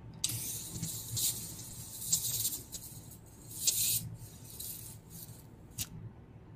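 Rechargeable electric arc lighter held against a small Ibuki moxa stick to light it: a thin, high hissing crackle with a faint steady high tone, starting about a quarter-second in and cutting off near the end.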